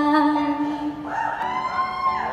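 A woman singing long held notes. One note fades out about half a second in, and a new, slightly rising note comes in about a second in and is held.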